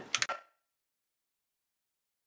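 The last fragment of a woman's spoken word, cut off within the first half second, then dead digital silence. The heat gun is not heard at all.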